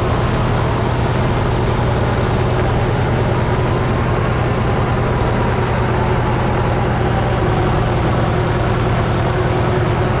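Heavy diesel fire engines running steadily: a constant low engine drone under a loud rushing noise.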